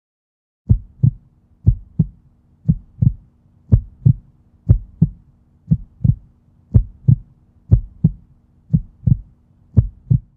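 A heartbeat sound effect: pairs of low thumps, lub-dub, about once a second, over a faint steady low hum, starting just under a second in.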